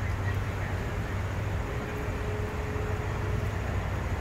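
Steady low outdoor rumble with no distinct events, and a faint held tone in the middle.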